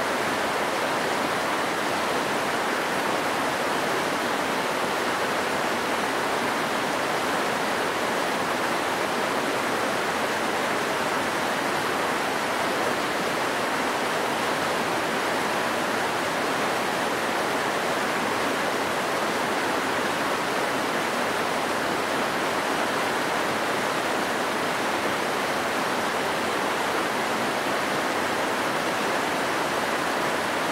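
Rocky stream rushing over rapids: a steady, unchanging rush of water.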